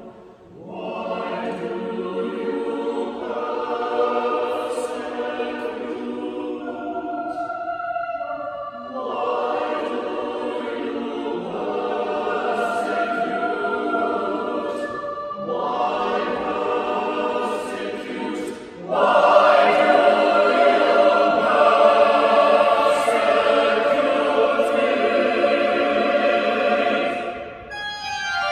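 A small choir singing unaccompanied in sustained chords, in phrases broken by brief pauses for breath and growing louder about two-thirds of the way through.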